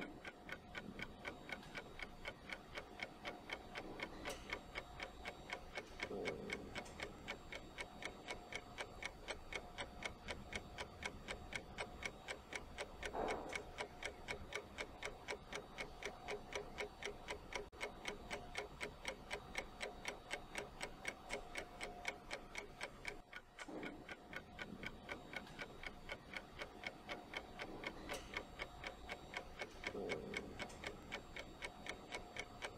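Quiet, steady, even ticking of a clock sound effect that accompanies an on-screen countdown timer, marking off the seconds of a one-minute wait.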